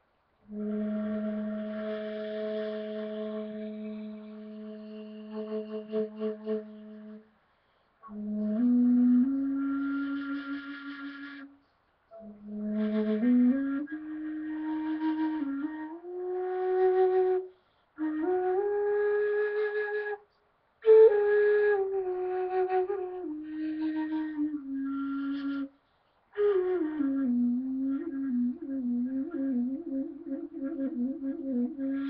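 Six-hole end-blown rim flute in the key of A played solo: a long low note with all holes covered, held about seven seconds, then short phrases of notes stepping up the scale and back down, with breathy tone and brief pauses for breath. Near the end it settles on a low note with quick wavering trills.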